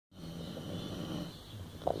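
Dog snoring: one low, rasping snore lasting about a second, then a short, louder sound just before the end.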